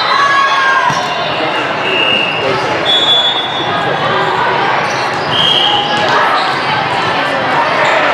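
Busy volleyball tournament hall: many voices chatter, balls thud and bounce on the courts around, and there are several short, high referee whistle blasts, all echoing in the big hall.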